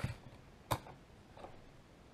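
A few sharp wooden clicks and taps as a freshly sawn dowel piece and the handsaw are handled on the workbench, the loudest a little under a second in.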